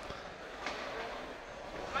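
Quiet, even background noise of an indoor fight venue, with a faint knock about two-thirds of a second in.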